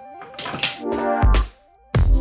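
Electronic background music: a stepping synth line over heavy bass-drum hits, one about a second in and another at the very end, with a short lull before it.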